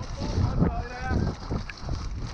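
Mountain bike running fast down a muddy trail, picked up by a camera on the bike or rider: an uneven rumble of tyres and bike over the dirt mixed with wind buffeting the microphone. A spectator's shout comes through briefly in the first second.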